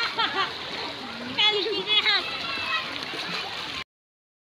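Children's high voices shouting and calling out over water splashing in a swimming pool. The sound cuts out suddenly near the end.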